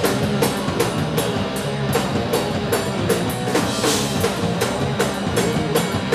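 Live rock band playing an instrumental passage: a drum kit beats steadily under electric bass and guitar.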